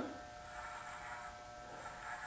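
Faint, steady buzz of electric hair clippers running as they start cutting through long dreadlocks.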